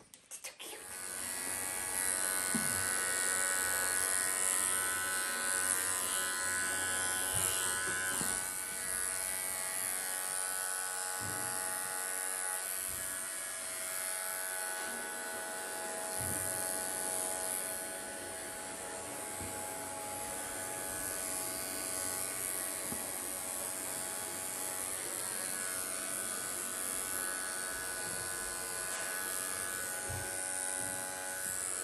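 Electric pet grooming clipper running with a steady buzz as it clips a schnauzer puppy's coat. It starts about a second in and holds an even level.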